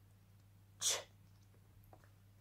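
A woman saying the phonics sound 'ch' once, a short breathy hiss about a second in.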